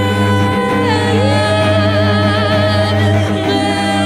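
Female voice sung through effects pedals, several layered parts holding long notes with vibrato over a steady low drone. One held note slides up to a higher pitch about a second in.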